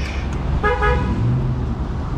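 A car horn sounds one short toot of about half a second, just over half a second in, with a steady pitch. A steady low rumble runs underneath.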